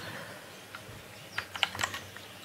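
Computer keyboard keystrokes: a faint key click, then a quick run of about five clicks in the second half. These are the Ctrl+C and Ctrl+V copy-and-paste shortcuts.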